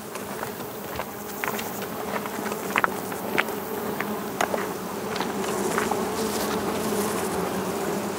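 Many honeybees buzzing around their hives in a steady, low hum, with a few faint ticks scattered through it.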